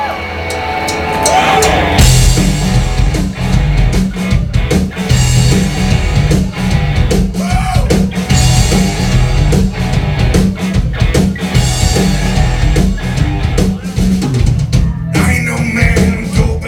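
Live indie rock band starting a song: after a brief quieter lead-in, drums and bass come in about two seconds in and the full band plays on over a steady, driving drum beat.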